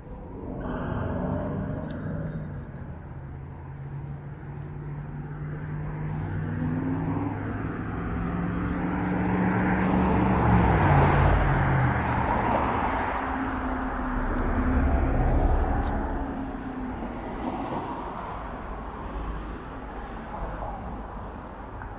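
Cars driving past on a city street, their engines and tyres swelling and fading as they pass. The loudest passes come about ten to eleven seconds in and again around fifteen seconds in.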